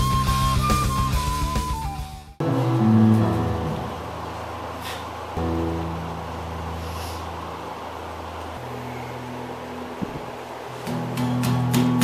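A full-band heavy rock instrumental ends abruptly about two seconds in, its melody falling at the close. Then a solo electric bass guitar plays a few low held notes unaccompanied, goes quiet for a couple of seconds, and sounds another note near the end.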